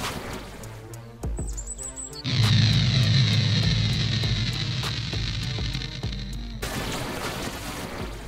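Background music with a steady beat. About two seconds in, a loud boom opens a sustained whooshing magic-portal sound effect with a low rumble under a hiss, which cuts off suddenly about four seconds later.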